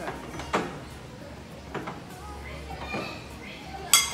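Hand-held key grips knocking in the slots of an overhead obstacle board as a climber moves along it: three sharp knocks about a second apart, then one louder, ringing clack near the end.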